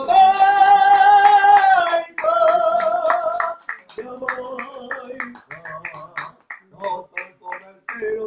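Singing with musical accompaniment, with the audience clapping along in a steady rhythm of about three claps a second. Long held sung notes fill the first few seconds; after that the clapping stands out over lower, quieter singing.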